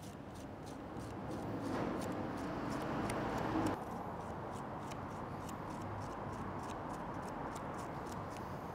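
Knife scraping the watery seeds out of cucumber halves on a wooden cutting board: faint soft scraping with small clicks, a little louder for a stretch about two seconds in.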